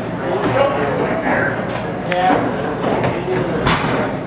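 Indistinct chatter of a bar crowd, with a few sharp clicks of pool balls: the cue striking the cue ball and balls knocking together, the loudest click near the end.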